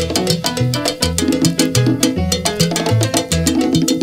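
Salsa band recording in an instrumental stretch without vocals: a steady, rapid percussion beat over stepping low notes.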